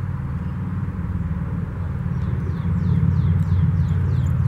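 A low engine rumble, steady in pitch and growing louder, with a small bird giving a quick series of short falling chirps in the second half.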